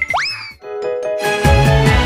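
A quick cartoon-style rising swoop sound effect, followed by a few light music notes; about a second and a half in, an upbeat outro music track with a steady bass beat starts.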